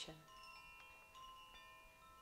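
A Koshi wind chime, a wooden tube with tuned metal rods inside, swayed by hand: soft, overlapping notes struck a few times, each ringing on and fading slowly.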